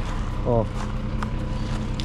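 Heavy diesel engine idling steadily, with a few faint crunches of footsteps on gravel.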